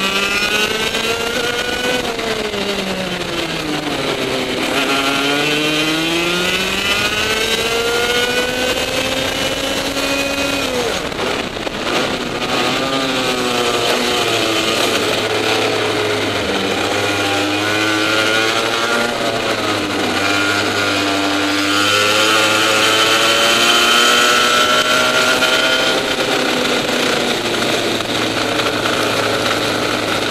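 Two-stroke 125cc TAG kart engine at race speed, its pitch climbing along the straights and dropping into the corners over and over.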